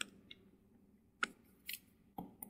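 Faint taps and scratches of a stylus writing on a tablet screen: a few sharp clicks and a short scratch near the end.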